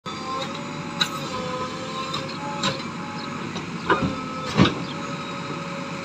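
JCB 3DX backhoe loader digging a trench: its diesel engine runs steadily with a thin whining tone over it. Several short knocks and clanks from the backhoe arm and bucket come through, the loudest about four and a half seconds in.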